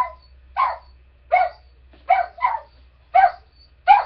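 A dog barking over and over, about seven barks in quick succession, less than a second apart.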